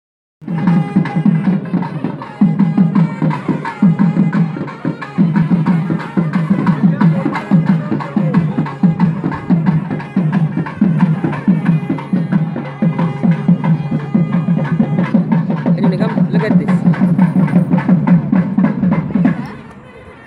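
Temple festival music: fast, steady drumming with a sustained melody over it. It drops away just before the end.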